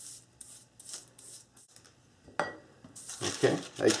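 A pastry brush swishing in short, soft strokes over oiled parchment paper, then a single sharp click a little past halfway as the brush is set down against the bowl. Near the end the parchment sheet rustles as it is picked up.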